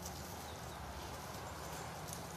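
Steady outdoor background noise with a low hum underneath, with no distinct sound standing out.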